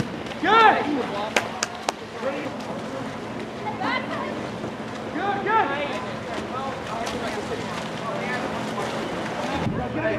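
Shouting voices from the pool deck and water over a steady wash of splashing and wind noise, with a few sharp clicks about a second and a half in.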